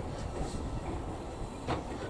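LMS Royal Scot class three-cylinder 4-6-0 steam locomotive 46115 Scots Guardsman running slowly with a single coach. Its exhaust and the wheels on the rails make a steady low rumble, with one sharper sound near the end.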